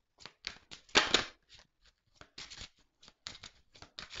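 A deck of Lenormand cards shuffled by hand: a quick, irregular run of papery rasps and snaps, loudest about a second in.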